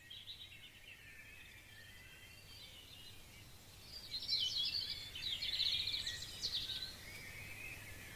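Birds chirping and singing over a faint steady background hiss, with quick trills growing louder about halfway through.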